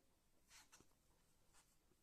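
Near silence, with a few faint, brief rustles of yarn being worked on a crochet hook.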